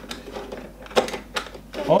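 Hard plastic parts of a Fingerlings see-saw playset clicking and knocking as the see-saw bar is fitted onto its stand: a handful of sharp clicks, the loudest about halfway through.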